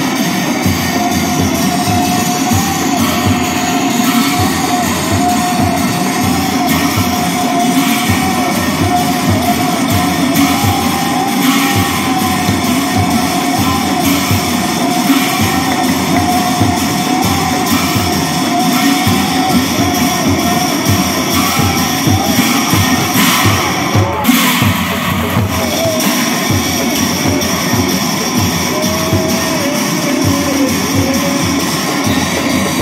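Assamese nagara naam music: large nagara drums beaten in a dense, steady rhythm with big hand cymbals clashing over them. A single wavering sung line is held above the drumming and breaks off briefly near the end.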